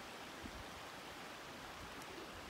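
Faint, steady outdoor background hiss with no distinct events.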